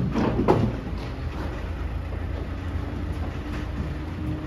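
Limousin calves' hooves knocking and shuffling on the livestock truck's metal deck, a few sharp knocks at the start, over a steady low rumble.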